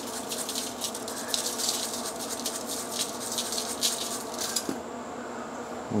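Dry seasoning rub sprinkled from a shaker onto raw ribeye steaks and aluminium foil, the grains landing in a rapid, irregular patter of tiny clicks that stops about three-quarters of the way through.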